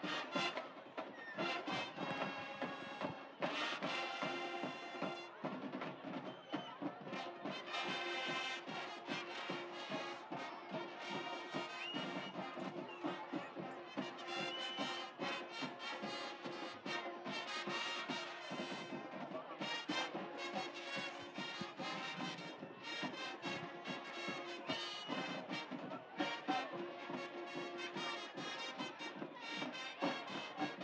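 A high school marching band playing a brass tune in the stands, with drums beating along.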